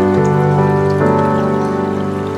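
Soft ambient piano playing slow, held chords, with a new chord coming in about a second in, over a faint patter of falling water.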